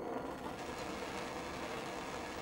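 Gas burner flame burning steadily under a test tube, a constant even rushing noise.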